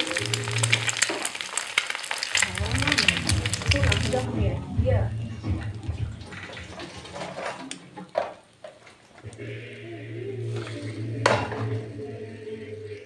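Bread sizzling on the hot plates of a Moulinex Ultracompact sandwich maker, a dense crackling hiss that stops abruptly about four seconds in. A few sharp knocks follow, the loudest near the end.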